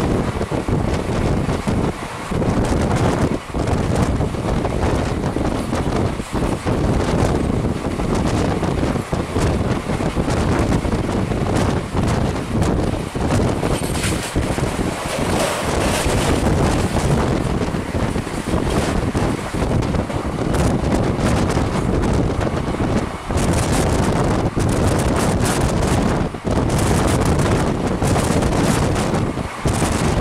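Wind buffeting the microphone held out of a fast-moving LHB passenger coach, over the steady rumble of the train running on the track, with irregular short knocks and clatters from the wheels, more of them near the end.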